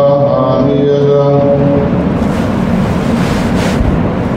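A man's voice chanting in long held notes. About two seconds in it gives way to a rushing noise that swells and then stops just before the end.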